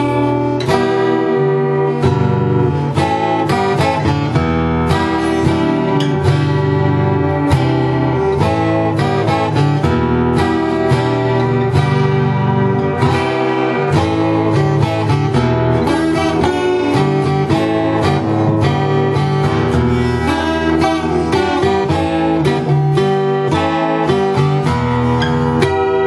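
Eros 612 Nevada 12-string acoustic guitar, strung with Martin Lifespan strings, played unamplified: a continuous run of picked and strummed chords.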